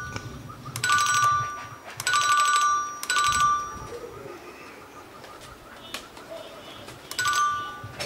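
Electronic pigeon-racing clock beeping with a short ringing trill four times: about one, two and three seconds in, and again near the end. Each trill marks a returning racing pigeon being registered as it enters the loft.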